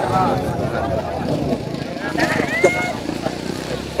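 Faint voices in the background over a steady low rumble of outdoor ambience, with a short high rising voice-like tone a little past halfway.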